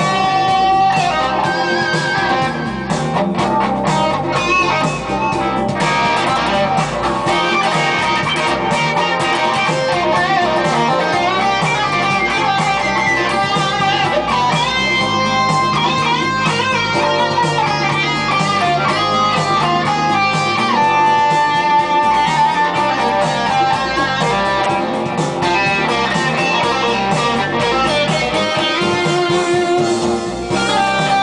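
Overdriven electric guitar playing a melodic jazz-blues improvisation in C minor, with flowing single-note lines, note bends and a long held note about two-thirds of the way through. The tone comes through a Marshall JMP1 preamp on its OD2 channel, with a Boss CS3 compressor.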